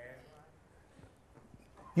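A brief pause in a man's preaching: faint room tone with a few soft ticks, his voice trailing off at the start and starting again right at the end.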